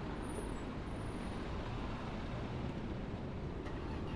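Steady low rumble of road traffic, an even background noise with no distinct events.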